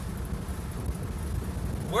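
Steady low rumble of road and engine noise inside the cabin of a moving vehicle.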